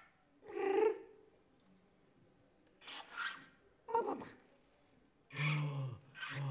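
A female improvising vocalist's wordless voice in four short animal-like cries with gaps between them, one sliding down in pitch, and a lower, louder cry starting near the end.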